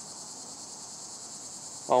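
High-pitched insect chorus, like crickets, trilling steadily with a fast, even pulse.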